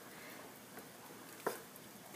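Faint steady hiss of a hot pot of stewed conch steaming on the stove, with a single light knock about one and a half seconds in as a wooden spoon goes into the pot.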